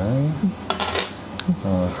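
Plastic draughts pieces clicking as they are picked up and set down on a wooden board, with the sharpest click about one and a half seconds in. A short voiced hum comes at the start.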